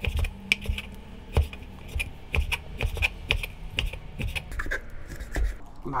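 Chef's knife cutting through raw pork shank and knocking on a wooden cutting board: an irregular run of sharp knocks, a few a second.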